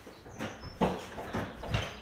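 A few irregular knocks and thumps, about four in two seconds, the loudest a little under a second in.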